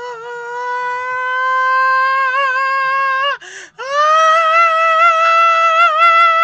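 A man singing loud, wordless held notes: one long note that slowly rises and wavers at its end, a quick gasp of breath about three and a half seconds in, then a louder, higher note held strongly.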